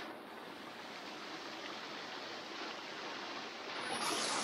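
Steady rushing of a small waterfall spilling over rocks into a creek.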